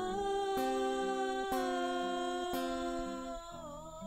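A woman's voice holding one long wordless note in worship, over an acoustic guitar strummed about once a second. The note dips slightly near the end.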